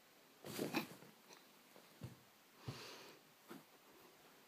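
A pet's short, harsh noisy outburst about half a second in, followed by a few soft thumps and shorter harsh sounds.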